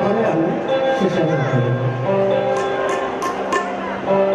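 Baul folk song: a man's voice singing with gliding notes in the first half, then a steady held note with instrumental backing. A handful of sharp percussion strikes come in the second half.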